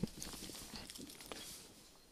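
Faint, soft hoofbeats of trotting harness horses on a dirt track, a few scattered soft clicks over a low background that drops away shortly before the end.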